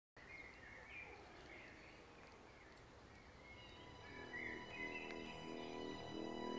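Faint woodland ambience with birds chirping, then soundtrack music with steady sustained tones fading in about four seconds in and slowly growing louder.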